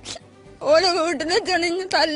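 A woman speaking Malayalam into a reporter's microphone, with a short pause and a quick breathy sound near the start before she goes on.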